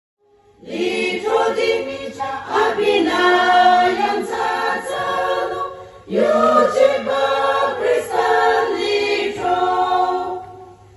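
A women's choir singing in parts, coming in about half a second in, with a short dip about six seconds in before the singing resumes.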